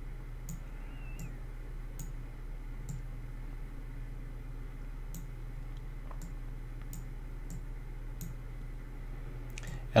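Computer mouse clicking: about a dozen scattered single clicks, irregularly spaced, over a steady low electrical hum.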